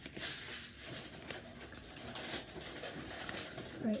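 Baseball cards being flipped through by hand, one card sliding off the stack after another: a quiet, papery rustle of card stock rubbing and light flicks as the cards come off.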